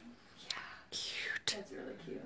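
Quiet whispered speech and low murmuring, with a few soft clicks.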